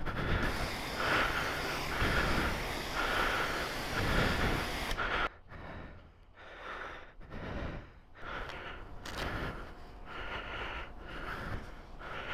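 Jet-wash lance spraying water in a steady hiss, which cuts off suddenly about five seconds in. Quieter, uneven rushing noise follows.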